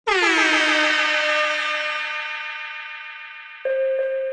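Electronic dance music: a loud synthesizer chord that starts abruptly with a brief downward pitch bend, then holds and slowly fades with a sweeping, phasing shimmer. A second synth note strikes just before the end.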